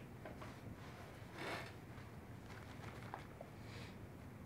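Quiet room tone with faint handling noise from gloved hands and a stethoscope on a hospital gown, including one short soft swish about a second and a half in.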